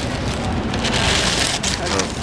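Paper sandwich wrapping rustling and crinkling as it is opened by hand, loudest for about a second in the middle, over a steady low room hum.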